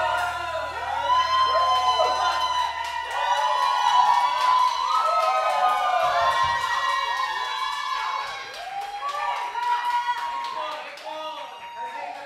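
Small club audience cheering, whooping and clapping at the end of a song, many voices shouting over one another. A low steady tone from the stage dies away about three seconds in.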